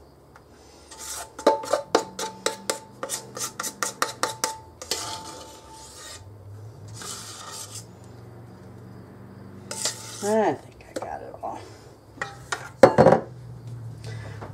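Metal knife clicking and scraping against a metal mixing bowl and a sheet pan as chocolate frosting is scooped out and spread. It starts with a quick run of taps, about four a second, with a faint metallic ring, then goes to scrapes, and there is a sharper knock near the end.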